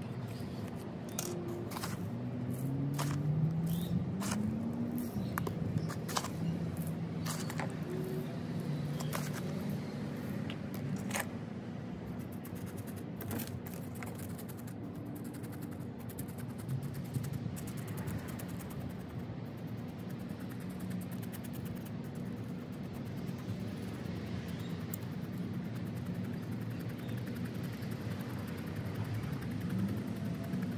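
Light clicking and scraping of a plastic stick poking perlite and soil into a small plastic plant pot, mostly in the first dozen seconds. Under it runs a steady hum of a vehicle engine, with a rise in pitch a few seconds in.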